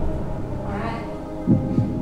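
Tense game-show background music: a low, steady drone with a pulsing beat underneath and a louder hit about one and a half seconds in.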